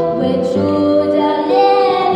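A girl singing solo through a microphone, holding long notes that step from one pitch to the next, with steady lower notes held underneath.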